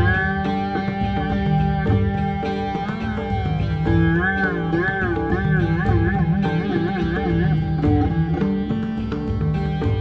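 Rudra veena playing a Dhrupad composition in Raag Durga with pakhawaj accompaniment: plucked notes with long pitch glides, and from about the middle a run of quick back-and-forth bends that speed up, over the pakhawaj's drum strokes.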